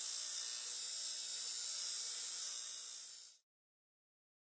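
Steady, high-pitched electronic static hiss with a faint low buzz beneath it. It fades a little, then cuts off suddenly about three and a half seconds in.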